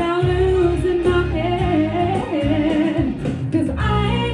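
A woman singing a pop song into a handheld microphone over a backing track with a bass line. Her held notes waver and slide, and her voice breaks off briefly a little past three seconds in, then comes back.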